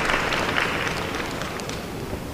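Audience applause in an arena hall, slowly dying down.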